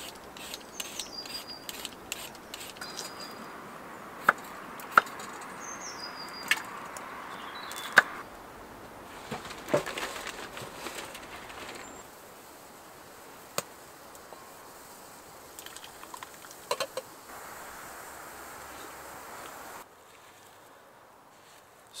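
Potatoes being peeled with a hand peeler over a wooden chopping board: rough scraping with scattered sharp knocks, thinning out to a few isolated knocks in the second half.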